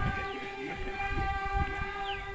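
A keyboard instrument holds one steady chord, with low drum beats underneath, as accompaniment to Santali dong dance music.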